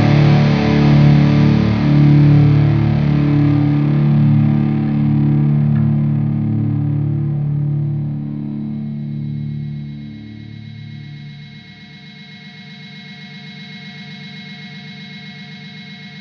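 Instrumental sludge/post-rock: loud, distorted electric guitar chords ring out and slowly fade over about ten seconds, leaving a quiet, steady held guitar tone.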